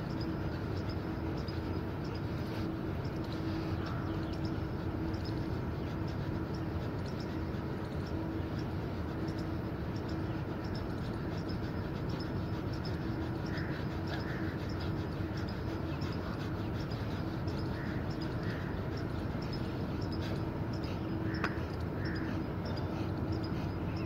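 A man breathing rapidly and forcefully in and out through his nose in a yogic rapid-breathing exercise, over steady background noise with a faint low hum.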